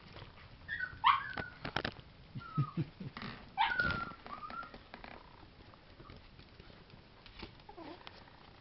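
Eight-week-old chihuahua puppies yipping at play: a few short, high yips that slide up and down in pitch, about a second in and again around three to four seconds in, among light taps and clicks of paws on a wooden floor. The second half is quieter.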